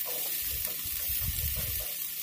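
Onion, garlic and green chilli paste sizzling steadily in hot mustard oil in a nonstick wok as a wooden spatula stirs it, with a low rumble in the second half.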